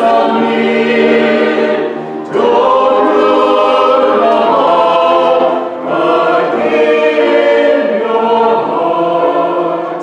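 Mixed choir of men and women singing together in sustained phrases, with short breaks between phrases about two seconds in and again near six seconds.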